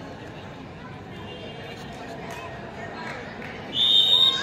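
Spectators chattering around the court, then near the end a referee's whistle gives one loud, short, shrill blast as the raider is tackled, signalling the end of the raid.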